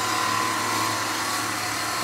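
Wood lathe running with a turning tool cutting the small spinning workpiece: a steady whir and hiss with a thin, even whine.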